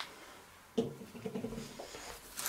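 Quiet handling of fireworks packets in a cardboard box: a light click at the start, then soft rustling and knocking as a hand reaches in among the packets.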